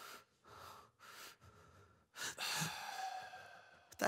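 A man breathing heavily in a few short breaths, then letting out a long, louder sigh about halfway through.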